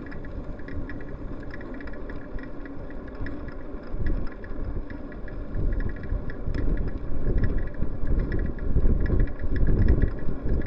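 Riding noise on a bicycle-mounted camera: a low rumble of wind and road with traffic behind. It grows louder in the last few seconds as a car closes in from behind.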